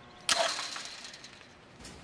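A heavy metal gate latch clanks shut about a third of a second in and rings briefly as it fades. A short light click follows near the end.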